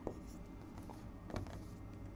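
Pen writing on an interactive display screen: a few light taps of the pen tip against the glass with faint scratching between them as a word is written.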